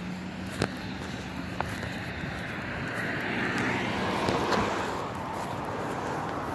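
Outdoor traffic noise with a vehicle going by, swelling between about three and five seconds in and then easing off, over a faint steady hum. Two faint clicks come in the first two seconds.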